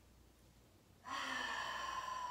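A woman's audible open-mouth exhale, a voiced sigh that starts about a second in and holds one steady pitch.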